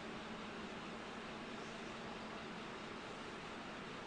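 Steady low hiss of background room tone, with a faint low hum running under it.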